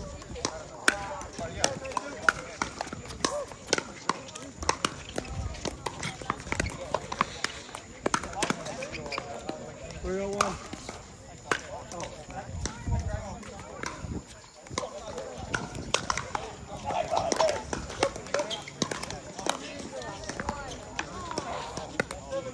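Pickleball play: sharp, irregular pops of paddles hitting a plastic pickleball and the ball bouncing on the hard court, with indistinct voices in the background.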